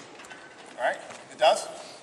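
Two short spoken syllables from a man's voice, about half a second apart, over quiet room sound.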